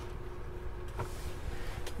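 Low steady room hum, with a faint click about a second in and another near the end as a hard plastic graded-card slab is handled and set onto a clear acrylic stand.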